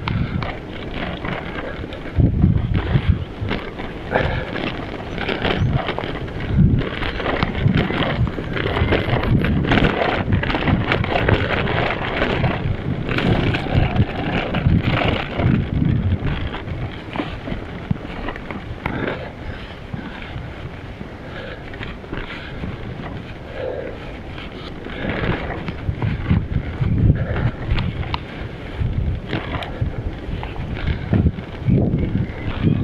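Wind buffeting an action camera's microphone while a bicycle rides over a rough dirt and gravel track, with tyre noise and frequent bumps and rattles. The low rumbling wind gusts are loudest about two seconds in and again near the end.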